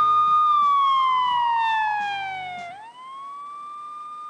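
Electronic sound effect closing a TV programme's title sting. A single steady tone slides smoothly down in pitch over about two seconds, then swoops back up and holds, fading, with the last of the jingle music dying away beneath it.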